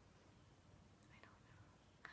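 Near silence: room tone in a pause between speech, with a faint soft sound about a second in.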